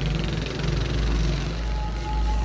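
A vehicle engine running with a low, steady rumble amid city street ambience.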